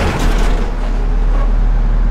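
Heavy diesel engines of a line of Volvo crawler excavators running together, a loud, deep, steady rumble that firms up just after the start.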